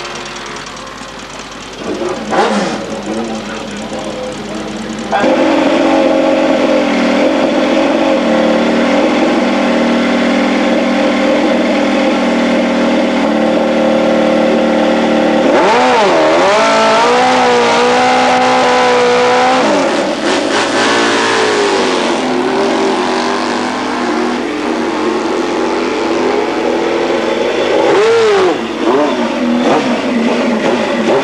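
Drag-racing motorcycle engine held at steady high revs for about ten seconds, then revved in a run of rising and falling throttle blips, with another blip near the end.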